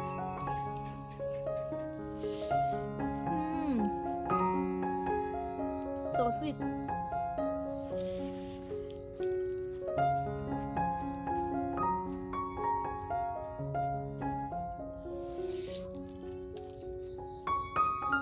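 Crickets chirring in a steady, fast-pulsing trill, heard over background music with a gentle melody of held notes.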